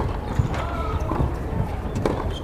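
A few sharp knocks of a tennis ball being struck by rackets and bouncing on a hard court during a rally.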